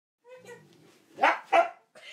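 A husky barking twice in quick succession, two short loud barks about a second in, after a faint higher whine-like sound.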